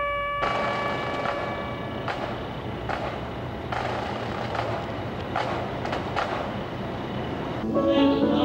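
A trumpet's last held note cuts off about half a second in, giving way to a steady background hiss with scattered knocks. Near the end, choral singing begins.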